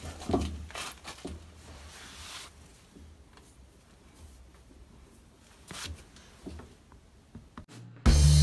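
Faint clicks and knocks of hands handling a front locking hub on a drum-brake assembly, a few scattered taps over a low steady hum.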